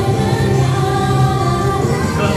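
Children singing a gospel song together, with keyboard and guitar accompaniment.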